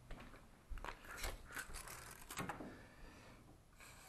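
Steel tape measure being pulled out, a faint run of clicks and rattles lasting about two seconds.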